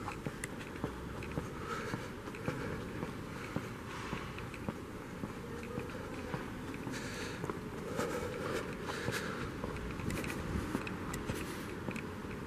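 Footsteps on a paved sidewalk, a run of small irregular steps and ticks over a faint steady background of city street noise.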